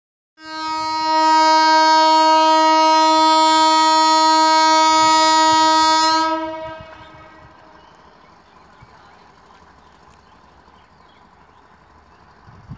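Train horn sounding one long, steady blast of about six seconds on a single note, which dies away quickly and leaves only faint background noise.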